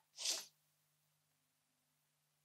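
A single short, sharp breath through the nose, about a third of a second long, then near silence with a faint steady low hum.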